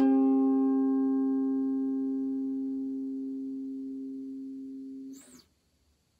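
The final chord of an acoustic mountain dulcimer rings out and fades slowly for about five seconds. It is then cut off by a hand muting the strings, with a short scrape.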